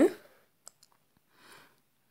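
A spoken word trailing off at the start, then two faint clicks and a brief soft rustle from hands handling fabric and sewing tools on a table.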